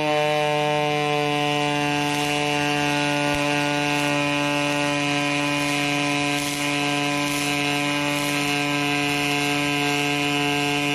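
Pulsed MIG arc welding aluminum with 4043 wire: a steady buzzing hum at one even pitch with a hiss over it, without a break.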